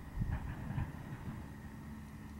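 Low, uneven rumble of wind buffeting the microphone, with a few faint rustles about half a second in.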